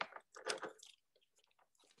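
Small plastic Sakura Koi watercolor travel box being handled and opened: a few soft clicks and crackles within the first second.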